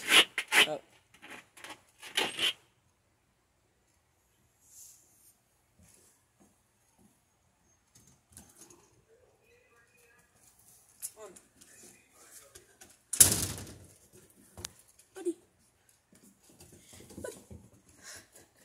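Mostly a quiet stretch with faint scattered knocks, broken about 13 seconds in by a single loud thud with a brief rush that trails off quickly.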